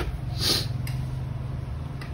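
A steady low hum of a motor running in the background, with a brief soft rustle about half a second in.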